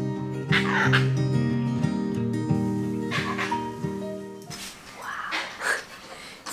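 A monkey giving several short bark-like alarm cries, spaced a couple of seconds apart, over background music that stops about two-thirds of the way through. The cry is a danger call that the local guesthouse owner reads as most likely a leopard nearby.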